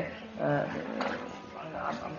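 A man speaking in short phrases, with background music underneath.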